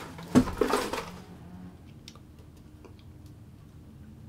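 A thump about a third of a second in as the wooden amp cabinet is shifted on a wooden chair, then a few faint light clicks and knocks as it is handled.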